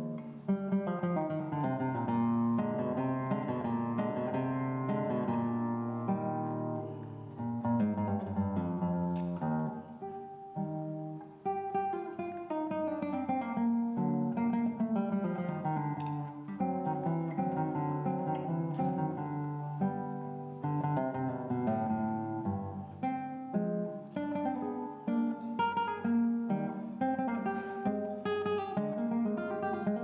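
Solo nylon-string classical guitar playing a fingerpicked piece, with a melody over moving bass notes, played continuously and briefly thinning out about eleven seconds in.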